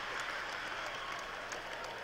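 Large theatre audience laughing and applauding after a punchline, a steady crowd noise that slowly dies away.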